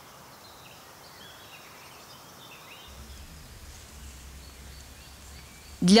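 Faint outdoor ambience with a few soft bird chirps. A low steady hum sets in about halfway through.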